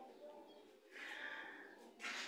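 A faint breath, a soft exhale close to the microphone lasting just under a second, about a second in.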